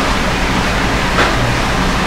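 Steady, loud background hiss with a low hum underneath, filling a pause in the talk.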